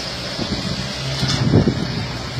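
Fiat Palio's engine running under load as the car works over a rutted dirt trail, with a steady low note that swells louder about one and a half seconds in.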